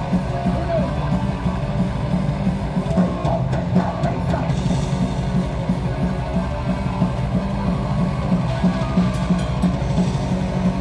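Heavy metal band playing live at full volume, with distorted electric guitars, bass and drums, heard close from the edge of the stage.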